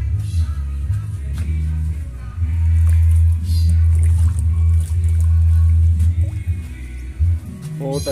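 Background music with a strong, steady bass line.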